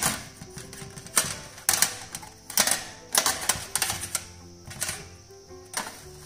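Metal surgical instruments clicking and clinking against each other and the stainless-steel tray, several sharp irregular clicks, over background music.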